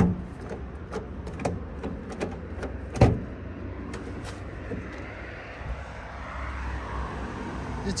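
Key working a car door lock with a string of small metallic clicks, then a single loud clunk about three seconds in as the door latch releases.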